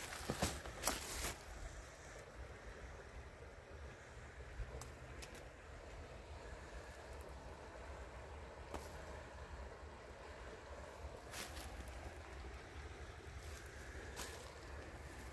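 Faint, steady outdoor ambience of a river flowing, with wind rumbling low on the microphone. A few sharp handling clicks come in the first second or so.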